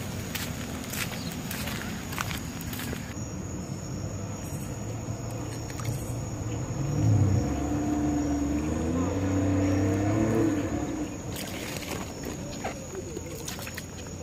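A boat's outboard engine runs for about four seconds in the middle, its pitch rising as it comes in and then holding steady. Scattered clicks and scuffs from handling and footsteps on the ramp come at the start and near the end.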